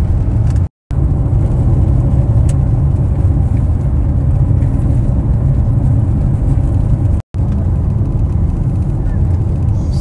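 Steady low rumble of road and engine noise inside a moving car's cabin. The sound cuts out completely twice for a moment, about a second in and about seven seconds in.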